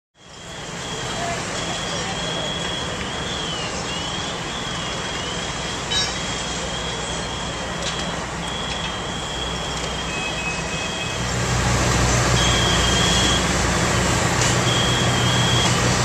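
Fire trucks' diesel engines running steadily under a continuous rushing noise. A thin, high-pitched whine breaks off and dips in pitch again and again. There is a single knock about six seconds in, and the engine noise grows louder about eleven seconds in.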